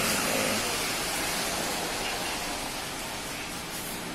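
Steady rushing background noise with no distinct events, easing slightly toward the end: the noisy background of a workplace.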